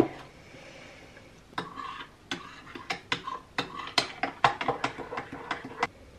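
Metal spoon stirring in a ceramic mug of hot cocoa, clinking against the sides in an irregular series of sharp clinks, starting about a second and a half in and stopping just before the end.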